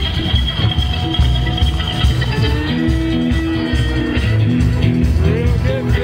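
A live country band playing: fiddle lead over drums, bass and guitar, with a steady beat and sliding fiddle notes.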